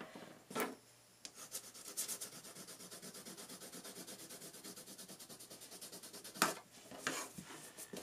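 Grizaye oil/wax colored pencil scratching across paper with light pressure in quick, even back-and-forth strokes, several a second. A short knock comes about half a second in and a louder brushing sound near the end.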